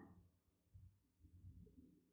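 Near silence: faint, short high chirps repeating about twice a second, with soft low scuffs of a pen writing on paper.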